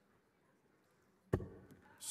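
One sharp thud of a steel-tip dart landing in the dartboard, about a second and a half in, after a quiet stretch.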